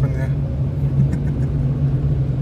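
Car engine and tyre noise heard inside the cabin while driving on an unpaved road: a steady low drone with rumble beneath.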